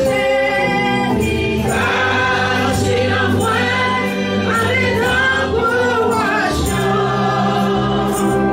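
Gospel praise singing by a group of voices, accompanied by a Yamaha keyboard and an electric bass holding steady notes underneath.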